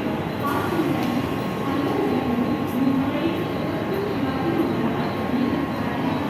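Mumbai Central Railway EMU suburban local train pulling out along the platform, its wheels and running gear giving a steady noise, with voices in the background.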